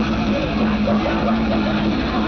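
Live heavy metal band over a PA heard from within the crowd: a held low note drones steadily, with crowd voices shouting over it.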